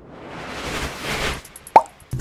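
Animated logo sting sound effect: a rising whoosh swells for about a second and a half, then a single short, sharp pop comes near the end.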